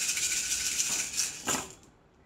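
A handful of cowrie shells shaken together in cupped hands before being cast, a steady clicking rattle that stops shortly before the end as they are thrown down onto the cloth.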